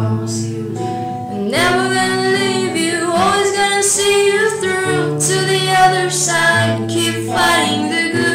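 A female voice singing over acoustic guitar chords. The voice comes in about a second and a half in, with long held and sliding notes.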